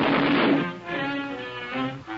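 Orchestral cartoon score with bowed strings, low cello and bass prominent, playing held notes. Under it, the noisy tail of a gunpowder explosion dies away about half a second in.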